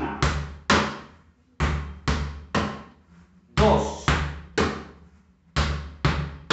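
A soccer ball bounced twice on a tiled floor and then struck with the hand, a three-stroke pattern (bounce, bounce, hand) with strokes about half a second apart, repeated about every two seconds.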